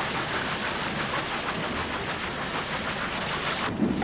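Water pouring and splashing off a water wheel, a steady rushing spray that cuts off suddenly near the end, followed by a short low thump.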